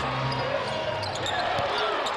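Live basketball arena sound during play: a steady background of court and crowd noise with a basketball bouncing on the hardwood floor and faint voices.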